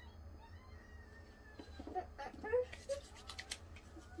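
Palms patting serum into facial skin: a quick run of light slaps in the second half.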